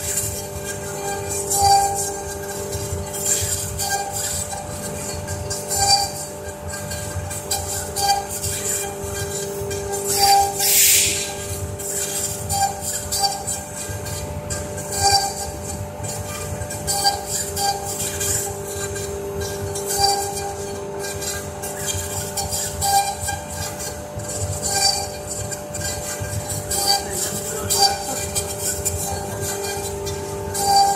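Two spindles of a double-head CNC router cutting into a wood board together: a steady whine and drone from the spindles and gantry drives, with short louder pulses every second or two as the cutters work through the wood. A brief louder rush of noise comes about eleven seconds in.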